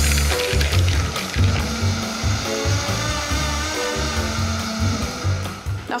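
Countertop jug blender running steadily, puréeing a wet kale sauce to smooth, under background music with a pulsing bass line.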